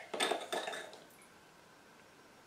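A stemmed wine glass of red wine handled on a stone countertop: a sharp clink of the glass foot on the stone, then under a second of scraping and swishing as it is swirled and lifted.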